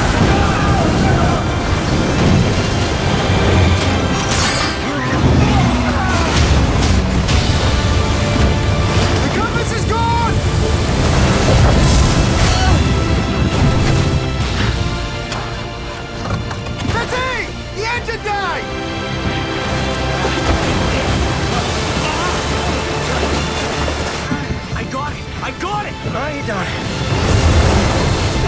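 A dramatic trailer mix: music with deep booming hits under the sound of storm waves crashing over a small boat, with a dense, heavy low rumble throughout.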